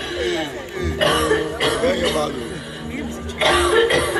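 Live hip-hop show heard through the concert sound system: a man's voice on the microphone over a sustained low chord, with heavy drum hits about a second in, shortly after, and again near the end.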